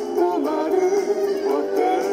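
Karaoke guide vocal: a man and a woman singing a Japanese duet line together over a backing band track, with vibrato on the held notes.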